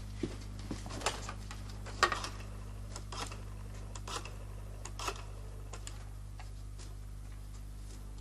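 A rotary-dial telephone clicking and clacking as the receiver is lifted and a number is dialled, sharp clicks coming about once a second, over a steady low hum.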